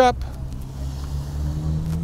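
A silver SUV driving slowly past along the street, its engine a low steady hum that rises a little in pitch.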